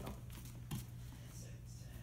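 A bare foot landing on a foam martial-arts mat, one soft thump about three quarters of a second in, over a steady low hum of room tone.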